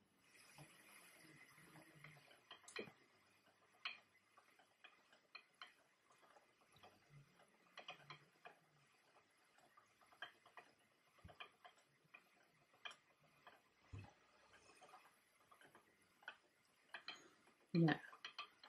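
Faint, uneven clicking and ticking, about once a second, from a wooden spinning wheel being treadled, its drive band on a faster whorl.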